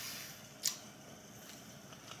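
Faint mouth sounds of a person chewing a bite of seafood, with one short, sharp wet click about two-thirds of a second in.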